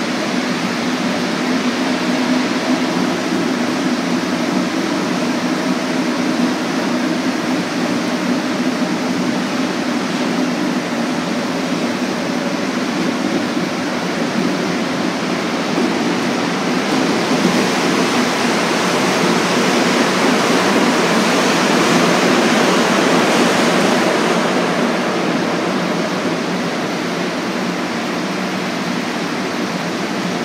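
Montreal Metro MR-63 rubber-tyred subway car running through a tunnel: a steady rolling roar with a low motor hum under it. The roar swells louder and hissier for several seconds in the second half, then eases off.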